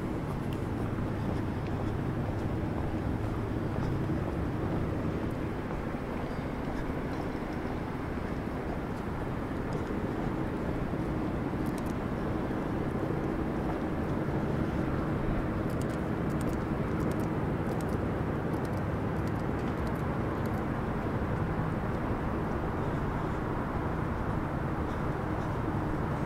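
Steady outdoor city background: a low hum of distant traffic with a faint steady drone under it, and a few faint ticks in the second half.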